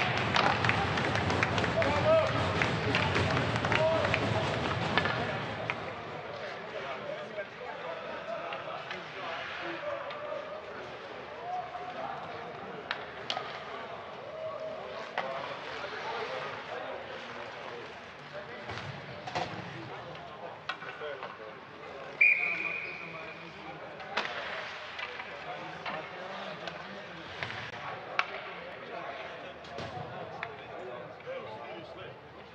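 Ice hockey rink: players and spectators shouting and cheering loudly for about the first five seconds. Then it falls to sparse shouts and knocks of sticks and puck, with a short referee's whistle blast about two thirds of the way through.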